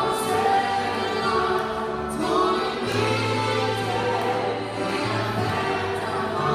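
Live gospel worship music: a Nord stage piano holding long low bass chords under a saxophone melody and a woman singing.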